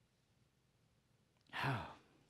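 Near silence, then about one and a half seconds in a man's short voiced sigh, falling in pitch and lasting about half a second.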